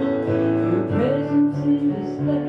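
Live acoustic guitar and electronic keyboard playing a slow song, with a woman's voice singing.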